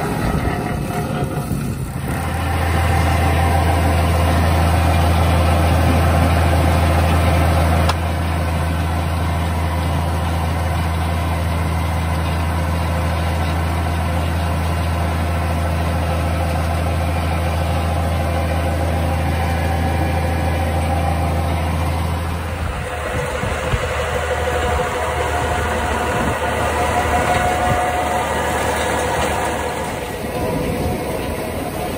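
Tractor engine running at a steady speed, driving PTO-powered farm machinery. The even low engine tone drops away about 22 seconds in, leaving a noisier machinery sound.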